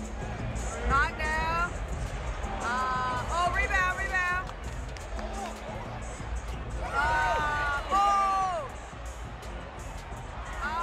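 Basketball arena sound during live play: music over the PA system above a steady crowd rumble. Three groups of short pitched notes bend up and down, about a second in, around the middle and near the end.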